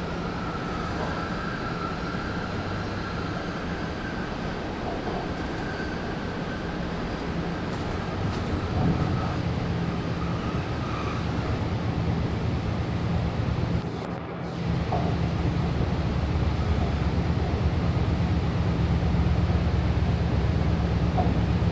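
Running noise inside a Sydney Metro Alstom Metropolis driverless electric train in motion: a steady rumble with a low hum. It grows louder about halfway through and dips briefly a few seconds later.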